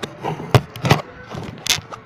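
A few short knocks and thumps, about one every half second, the sharpest near the end.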